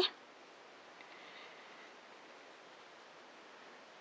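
Near silence: a faint steady hiss of room tone, with a very faint soft rustle about a second in.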